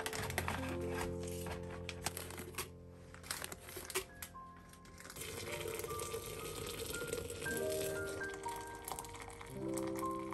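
A plastic tea packet crinkling as it is handled during the first few seconds. Then, from about five seconds in, water pours steadily into a glass pitcher holding a corn tea bag. Background music plays throughout.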